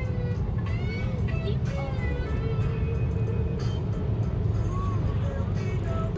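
Steady low road and engine rumble inside a moving car, with music playing over it.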